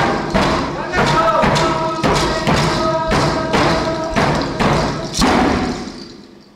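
Traditional Unangan (Aleut) drum song: a frame drum struck steadily about twice a second under group singing, fading out near the end.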